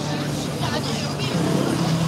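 Busy city street sound: a low motor hum and the voices of people passing by.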